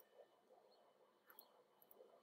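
Near silence: room tone, with two or three faint clicks.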